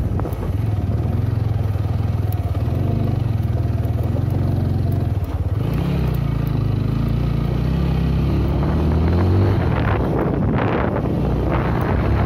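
Motorcycle engine running under way on a rough dirt track, its pitch rising and falling with the throttle, with a short dip about five seconds in and a climb near the end. A rush of noise joins it near the end.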